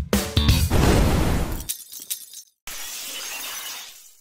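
Intro music with bass guitar breaks off, and a glass-shattering sound effect follows, decaying over about two seconds. After a short gap comes a softer hiss that fades away near the end.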